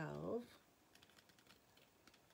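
A spoken word ends just after the start. Then come faint, irregular light clicks for about a second and a half.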